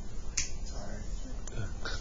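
A single sharp click about half a second in, with a fainter click later and a faint murmured voice in the room.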